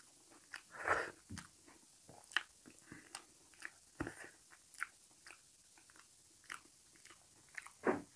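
Close-up mouth sounds of a person eating rice and potato curry by hand: chewing and wet lip smacks and finger-licking, as irregular short clicks. There is a louder burst about a second in and another near the end.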